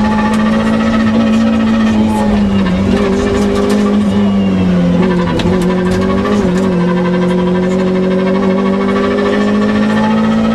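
Toyota Corolla AE86 Levin rally car's four-cylinder engine, heard from inside the cabin, running hard at high revs at full throttle. The pitch dips slightly a few seconds in, then climbs slowly again.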